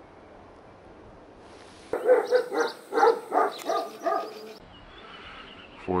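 A dog barking in a quick run of short barks, about three a second, from about two seconds in until about four and a half seconds in, over a quiet outdoor background.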